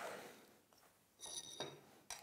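Mostly near silence, with a brief faint high-pitched metallic ring a little over a second in, from the red metal marking tool being handled on the board.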